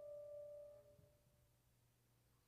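A held piano note fading away softly, ending about a second in, followed by near silence.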